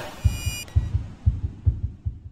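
Logo sting: a brief high shimmering chime at the start over a rapid low pulsing beat that fades away.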